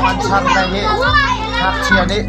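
Several children's voices chattering and calling over one another, over a steady background of music.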